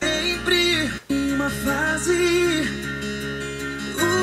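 Music: a man singing a slow ballad in Portuguese over acoustic guitar accompaniment, with a brief gap about a second in.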